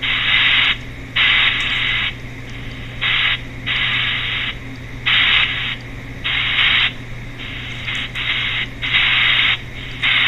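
Chopped pink noise from a paranormal ITC app played through a phone or tablet speaker: bursts of hiss switch on and off about once a second, of uneven length, with quieter hiss between them. A steady low hum runs underneath.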